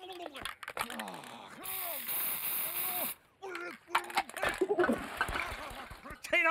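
Aerosol spray paint can hissing once for about a second and a half, set among short wordless vocal grunts and murmurs from the cartoon characters.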